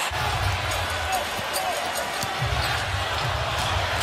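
Arena crowd noise with a basketball being dribbled on the hardwood court, its bounces heard as short thuds over the crowd.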